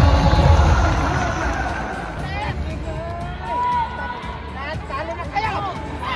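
Crowd noise in a large volleyball arena, with music over the loudspeakers, its bass strong for the first two seconds. In the second half a few spectators' voices call out above the crowd.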